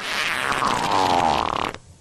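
A long, loud fart sound, sputtering and falling in pitch, lasting almost two seconds before cutting off suddenly. It is dubbed into a pause in a preacher's sermon as a comic sound effect.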